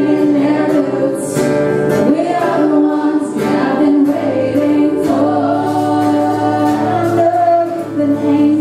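Two women singing a duet together over a strummed acoustic guitar, holding long notes.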